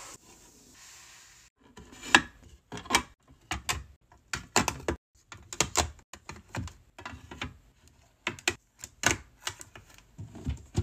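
Makeup compacts and palettes clicking and tapping against a clear plastic drawer organizer and each other as they are set in. It is a quick, uneven run of sharp clacks starting about a second and a half in.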